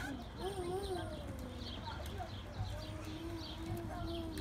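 A young child's wordless vocalizing, wavering up and down in pitch in stretches of about a second, over a background of quick, repeated high chirps.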